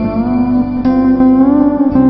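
Hawaiian lap steel guitar playing a slow melody, its notes gliding from one pitch to the next under the slide, with a fresh pluck a little under halfway through.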